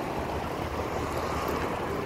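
Steady road noise of a car driving, heard from inside the car: engine and tyres on a wet road.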